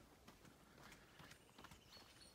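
Near silence, with faint footsteps of someone walking.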